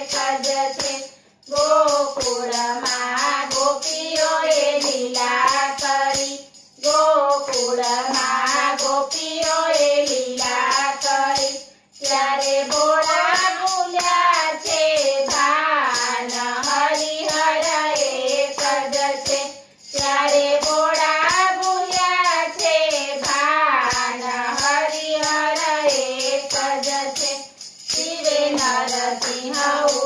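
Women's voices singing a Gujarati devotional bhajan together, line by line with brief breaks between phrases, kept in time by steady hand claps.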